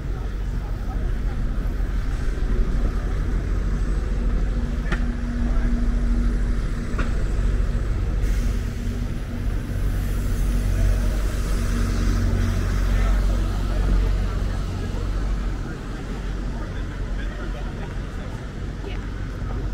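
Busy city street: a steady low rumble of road traffic, with passers-by talking. A steady hum runs from about four seconds in until about thirteen seconds.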